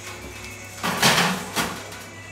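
A foil-covered baking dish being slid onto an oven's wire rack: a scraping clatter about a second in and a shorter knock just after, over faint background music.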